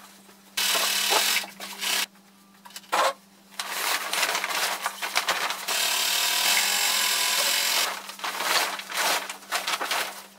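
Heavy sailcloth of a large sail rustling in long bursts as it is pulled across the table and fed to a sewing machine: one burst of about a second and a half, a longer one of about four seconds, then shorter ones.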